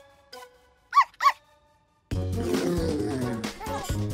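A cartoon puppy gives two short, high yips about a second in. After a brief pause, upbeat cartoon music with a strong bass beat starts about halfway through.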